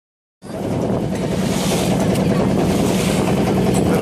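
Engine of a wooden passenger boat running steadily while under way, a constant low hum with wind on the microphone. It starts abruptly just under half a second in.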